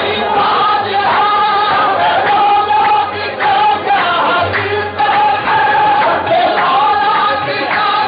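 Live qawwali singing: voices together in long held notes and bending melodic runs.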